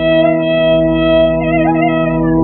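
Carnatic violin holding a note and then bending it in a wavering ornament (gamaka) over a steady low drone.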